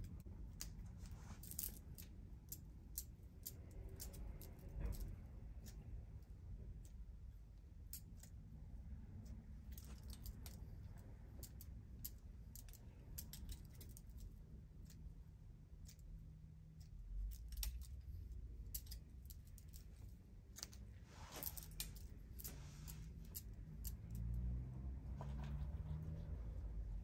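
Thinning shears snipping through hair, short crisp snips coming intermittently and sometimes in quick runs, as weight is cut out of the hair behind the ears.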